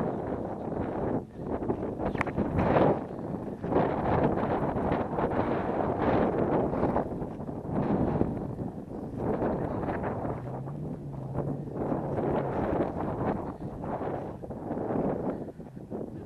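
Wind buffeting the microphone in uneven gusts, a low rushing noise that swells and drops.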